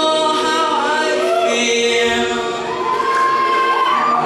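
Male voices singing into handheld microphones, holding long notes that slide up and down in pitch.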